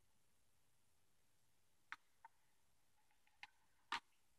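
Near silence with a few light clicks, then a sharper tap near the end as a vinyl LP is handled and set down onto the turntable platter over the spindle.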